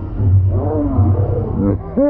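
Men shouting and whooping in short calls that rise and fall in pitch, over a low rumble.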